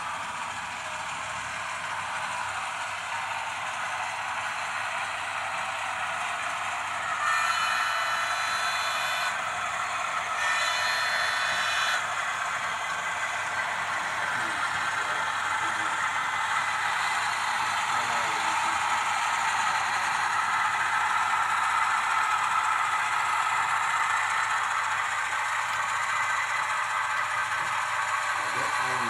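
HO-scale model train of the Southern Aurora, headed by two model diesel locomotives, running along the layout's track: a steady running and rolling noise that grows louder as the train approaches. About a quarter of the way in, two short, louder tones break in, each lasting a second or two.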